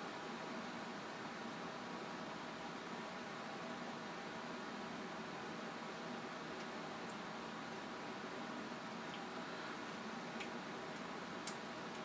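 Quiet steady room hum, like a fan or air conditioner running, with a couple of faint clicks near the end.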